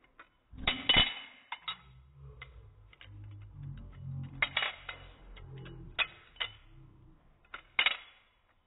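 Balisong (butterfly knife) being flipped: its metal handles and blade clack and clink together in irregular runs of sharp clicks. The loudest clacks come about a second in, twice in the middle, and just before the end.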